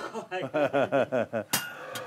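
A man's voice, then about a second and a half in a single sharp metallic clink with a brief ring, and a smaller click just before the end, among the metal tools of a blacksmith's forge.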